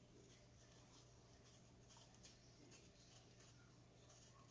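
Near silence with faint, scratchy scraping of a small knife cutting the peel off a persimmon, over a low steady hum.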